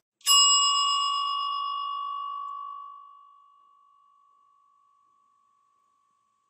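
A bell struck once, ringing on one clear tone with higher overtones that die away first, the ring fading out over the next few seconds.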